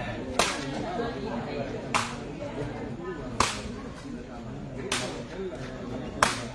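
Sepak takraw ball being kicked, four sharp smacks about a second and a half apart.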